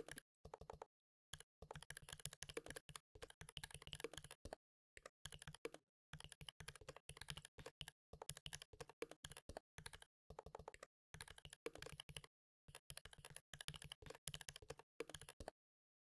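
Computer keyboard typing, quiet, in quick runs of keystrokes broken by short pauses. It stops just before the end.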